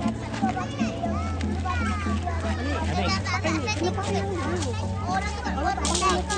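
Many young children chattering and calling out at once, over background music with a steady bass line.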